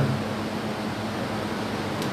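Steady background hiss with a low, even hum underneath.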